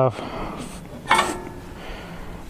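A single light metallic clink about a second in, with a brief ring: a steel bar knocking against the wood chipper's metal body.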